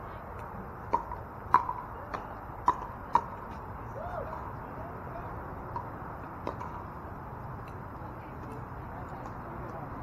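Pickleball paddles hitting a hard plastic ball: a quick exchange of about six sharp, ringing pops in the first few seconds, then one fainter pop later, over a steady outdoor background.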